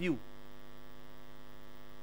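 Steady electrical mains hum in the sound system's audio feed, an even buzz with many overtones, as the tail of a man's word fades at the very start.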